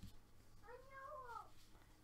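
A faint cat meow: one short call, rising and then falling in pitch, starting just over half a second in, against near silence.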